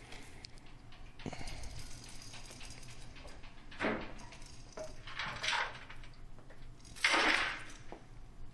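Quiet soundtrack of a TV drama scene: low ambience with a few short hissing noises, the loudest near the end.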